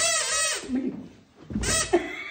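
A toddler's high-pitched, wavering squeal lasting under a second, then a second, shorter squeal near the end.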